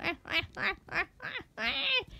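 A child laughing: about five short, rhythmic bursts of giggling, then a longer, higher burst near the end.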